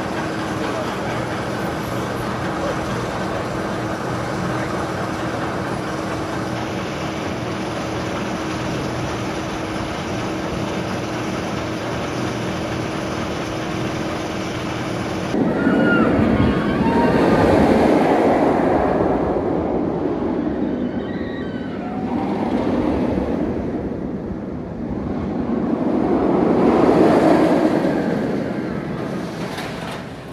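Medusa, a B&M floorless steel roller coaster: a train rumbling along its steel track, swelling to a loud pass and fading twice in the second half. Before that there is a steady hum with a constant low tone.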